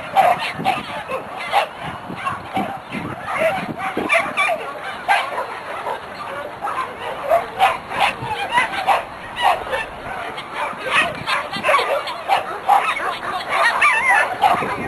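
Dogs barking and yipping in quick, excited bursts over and over, mixed with people's voices.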